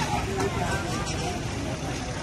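Street traffic rumbling steadily, with motorbikes passing and people talking.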